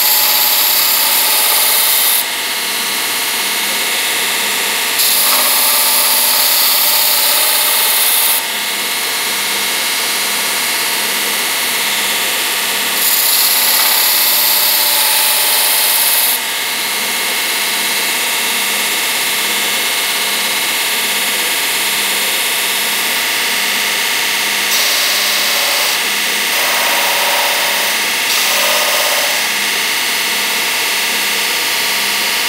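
Belt sander running steadily while the end of a full-hard steel file is ground against the abrasive belt, throwing sparks. There are three loud grinding passes of about three seconds each in the first half, then lighter, shorter touches near the end.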